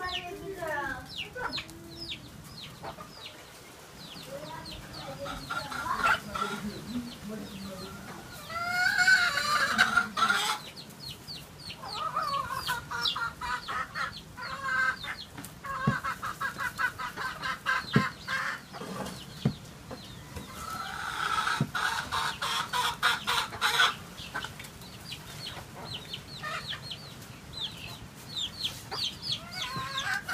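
Chickens clucking and calling, with louder bursts lasting a few seconds each and many short, high peeps in between.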